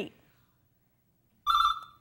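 Game-show ring-in buzzer: a single short electronic tone, about half a second long, sounding about a second and a half in, the signal that a contestant has buzzed in to answer.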